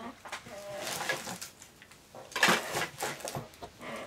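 Handling noise of small craft items on a tabletop: a short rustle or clatter about two and a half seconds in, with quieter knocks of things being set down and picked up.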